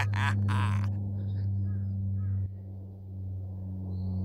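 Low, steady hum of a large bronze Buddhist temple bell's lingering ring, dropping in level about halfway through. Faint bird calls sound over it early on.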